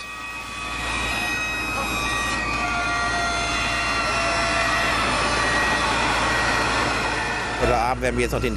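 Heavy crane machinery handling a steel foundation pile: a steady low rumble and mechanical noise, with high metallic squeals of steel that come and go. The noise builds over the first second, then holds steady.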